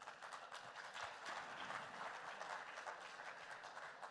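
Audience applauding: many hands clapping in a steady, fairly faint patter.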